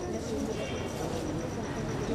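Indistinct chatter of people's voices, with a faint steady high-pitched whine underneath.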